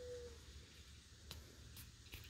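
Near silence: faint background with a brief thin steady tone at the very start and one faint click a little past halfway.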